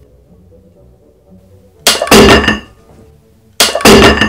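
Metal weight plates clanging twice, about a second and a half apart, each ringing briefly. A glued pine miter joint is giving way under load and dropping the plates.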